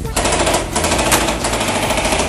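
Airsoft electric rifle firing a long full-auto burst close to the microphone, starting abruptly just after the start as a fast run of shots.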